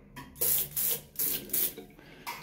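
Handheld bidet sprayer on a metal hose, its trigger squeezed four times: four short bursts of water spraying into a bathroom sink, each about a quarter second long.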